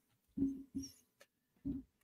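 Three short, quiet vocal sounds, two close together and one more near the end.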